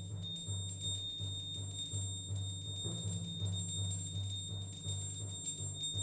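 Contemporary percussion-ensemble music played live: a sustained low tone pulsing about three times a second, with quick light strokes scattered above it.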